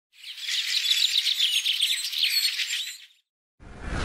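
Many small birds chirping together in quick, dense twitters for about three seconds, then cutting off abruptly. Near the end comes a short whoosh with a deep rumble under it, swelling and fading within about a second.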